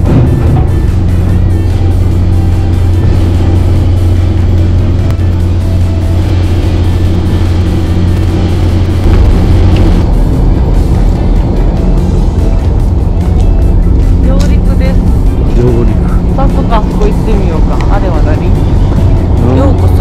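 Ferry's diesel engine droning with a loud, steady low hum as the boat comes in to dock. About halfway through, the hum gives way to a deeper, rougher rumble, and brief voices come in near the end.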